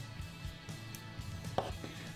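Faint scattered clicks of two pairs of jewellery pliers closing and twisting small anodised aluminium jump rings, with a sharper click near the end.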